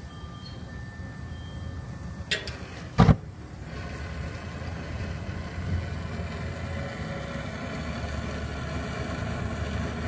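Gas burners of a millivolt deep fryer lighting off the pilot: a short click, then a sudden loud thump about three seconds in as the gas ignites, followed by the steady rush of the burners burning.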